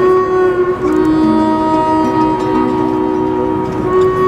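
Live acoustic trio playing: held harmonica chords over nylon-string guitar and cello, the long notes changing a few times.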